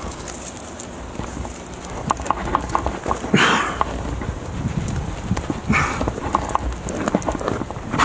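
Close handling noise of a climber moving on rock, picked up by a body-worn camera: scattered clicks and taps of hands and shoes on the limestone, with rubbing and two short hissing bursts about three and a half and six seconds in.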